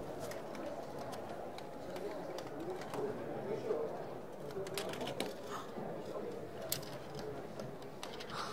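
Marbles rolling through a GraviTrax marble run, giving scattered sharp clicks as they strike the plastic track pieces and metal rails. A steady murmur of crowd chatter sits beneath.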